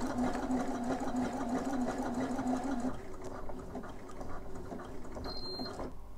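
Elna eXperience 450 computerized sewing machine stitching the closing bartack of an automatic buttonhole, a steady fast hum with a fine rapid ticking of the needle, for about three seconds before it stops.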